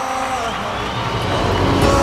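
Music changing from one piece to another. The held notes give way to a rising rush of noise with falling tones, and a new piece with steady held notes comes in at the very end.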